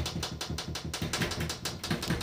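Rapid tapping, about ten sharp taps a second, starting suddenly.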